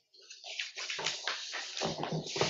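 Sheets of paper rustling and being shuffled on a table close to a microphone, in irregular bursts.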